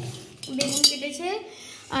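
A sharp metallic clink of steel kitchenware, just under a second in, while a voice talks.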